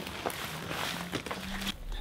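Gloved hands digging through dry leaves and compost in a compost bin, making a scratchy rustling.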